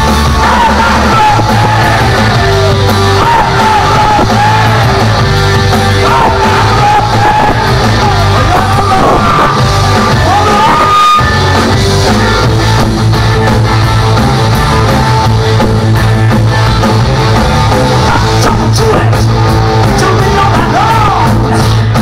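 Live rock band playing loud, with electric guitars, drums and a voice singing and shouting over them, heard through the crowd in a club hall. The low end drops out for a moment about halfway through.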